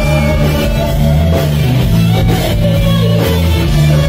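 Live band music played loud and steady: electric guitar over a drum kit and bass, with a djembe-style hand drum being struck.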